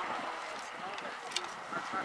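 Quiet talking of people near the camera, with one sharp knock about one and a half seconds in.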